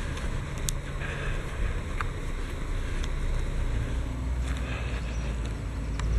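Steady low rumble and hiss of wind on the microphone outdoors, the rumble swelling near the end, with a few faint clicks.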